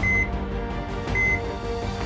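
Patient monitor beeping: two short high beeps a little over a second apart, over soft sustained background music.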